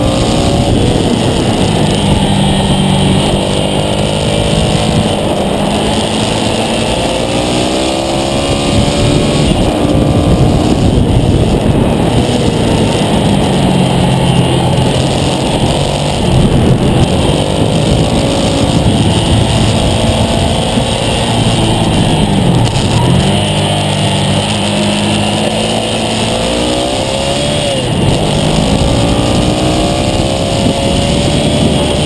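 Ducati Monster S2R 800's air-cooled L-twin engine ridden hard on track, its note repeatedly climbing under acceleration and falling off on braking, with a sharp drop and recovery in pitch about three quarters of the way through. Heavy wind rush on the microphone runs under it.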